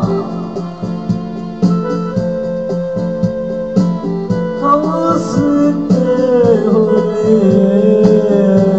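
Electronic keyboard music with an organ-like sound over a programmed drum beat, held chords underneath and a melody line that slides in pitch from about halfway in.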